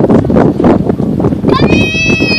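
Wind buffeting the microphone with a loud, gusty rumble. About one and a half seconds in, a single high-pitched call rises and then holds for just under a second.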